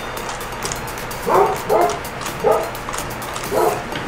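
A basset hound whining, four short pitched calls spread over a few seconds.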